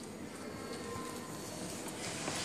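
Steady indoor background noise of a gallery room, with no distinct sound standing out.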